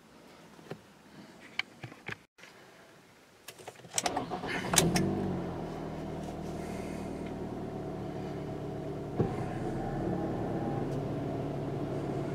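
A few faint clicks, then about four seconds in the 2012 Ford Escape's 2.5-litre four-cylinder engine cranks and starts, its revs rising briefly before settling into a steady idle.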